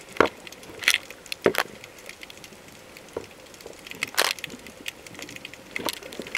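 Underwater sound: a handful of sharp, irregularly spaced clicks and cracks over a faint steady hiss.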